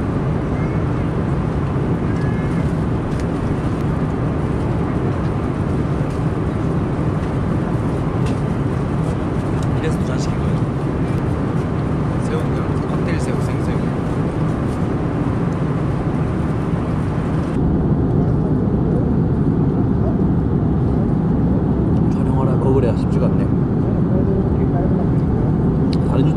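Steady low roar of a jet airliner's cabin in flight. About two-thirds of the way through, the upper hiss drops away abruptly while the low roar continues.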